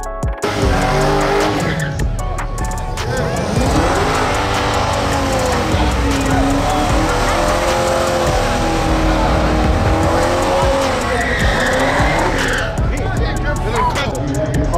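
Car doing a burnout: the engine revs rise and fall while the tyres squeal, with music and crowd voices behind.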